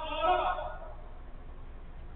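A man's drawn-out, high-pitched shout, such as a player calling on the pitch, that ends less than a second in. A low steady hum runs underneath.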